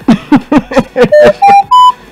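An electronic sound effect: a quick run of about seven short chirping, voice-like blips, then three beeps, each higher in pitch than the last.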